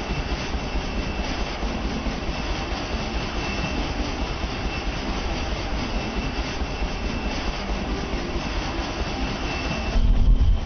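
Military helicopter running close by: a steady rushing engine and rotor noise with a thin high whine held throughout.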